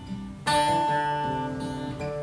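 Acoustic guitar: a chord strummed about half a second in, left ringing and slowly fading.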